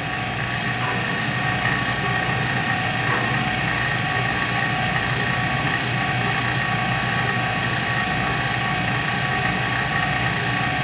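Leak-test bench equipment running: a steady pump-motor whir with a constant high whine over a hiss, unchanging throughout.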